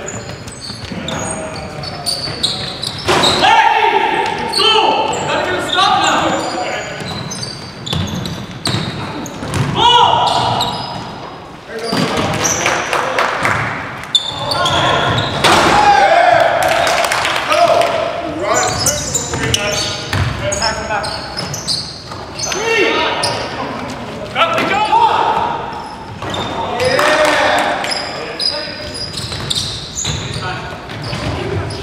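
Basketball bouncing on a hardwood gym floor during play, with players' voices calling out across a large gymnasium.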